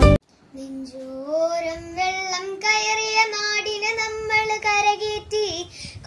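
A young girl singing a Malayalam song solo and unaccompanied, in long held notes that step up and down in pitch. A burst of strummed intro music cuts off at the very start.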